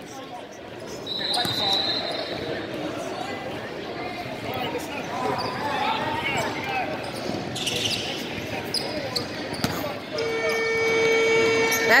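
Basketball game in an echoing gym: a ball bouncing on the hardwood, sharp knocks, and players' and spectators' voices. Near the end a steady buzzer-like horn sounds for about two seconds.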